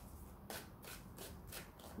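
Tarot deck being shuffled overhand between the hands: a quick series of soft, faint card swishes starting about half a second in.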